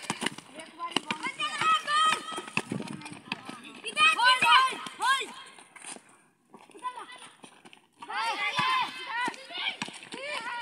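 Boys shouting and calling out to each other during a basketball game, in short high-pitched bursts, with knocks of the ball bouncing and running feet on the concrete court. There is a short lull a little past the middle.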